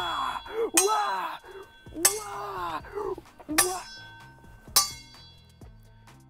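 Blunt steel swords clashing blade on blade in slow practice blocks: four ringing metallic clangs spaced a second or so apart.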